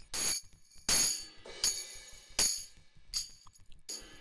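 Sampled tambourine from the Reason Drum Kits rack extension, playing a string of short jingly hits about every three-quarters of a second, one of them fainter, with the channel's distortion drive switched on.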